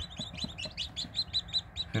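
A brood of newly hatched chicks, Korean native and Easter Egger, peeping: many short, high peeps overlapping, several a second.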